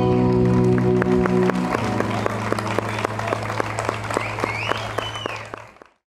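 The final chord of a live acoustic band with guitar, accordion and cajón rings out and settles onto a lower held note, while the audience claps and someone cheers near the end. It all fades out just before the close.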